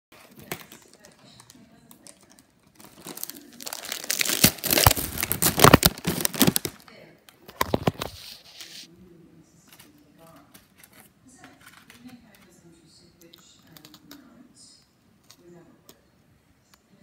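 Loud crinkling and rustling right at the microphone, from about three seconds in to about seven, with a shorter burst near eight seconds; after that only faint, low sounds.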